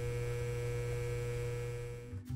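Steady electrical mains hum, a low buzz of fixed pitch with many overtones, fading slightly near the end.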